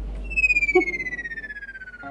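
Synthesised sound effect: a single high, whistle-like tone that starts suddenly and slides slowly and steadily downward in pitch, with a fast flutter in its loudness, fading as it falls.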